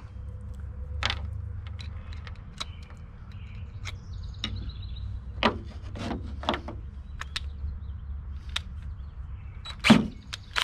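Scattered small clicks and taps of steel screws and a drill bit being picked up and handled on a wooden workbench, the loudest just before the end, over a steady low rumble.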